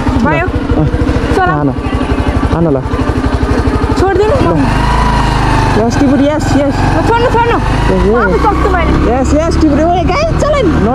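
Motorcycle engine running at low revs with evenly spaced firing pulses, then picking up revs about four seconds in and holding a steadier drone as the bike rides along.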